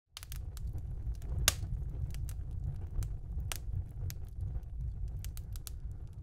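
Crackling wood fire: irregular sharp pops and snaps over a steady low rumble.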